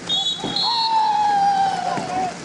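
A referee's whistle blown briefly at the end of a play, a steady shrill blast with a small jump in pitch halfway through. It is followed by a long, high, drawn-out call that slowly falls in pitch and is louder than the whistle.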